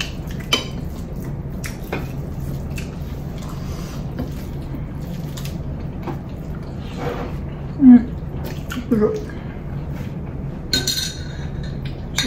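People eating with their hands from plates: small clicks and wet mouth sounds of mixing rice and chewing, with a few short hums of enjoyment, the loudest about two thirds of the way through. Near the end a glass clinks as it is picked up.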